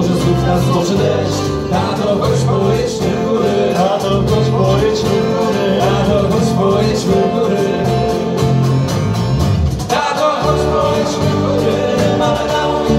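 Live acoustic folk band playing: strummed acoustic guitars over a cajón beat, with a cello and a wavering melody line on top. The music breaks off briefly about ten seconds in, then picks up again.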